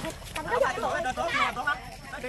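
High-pitched children's voices calling out and chattering, with no clear words.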